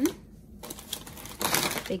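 Plastic food packaging crinkling and rustling as packs and bagged vegetables are handled. It starts about half a second in and is loudest near the end.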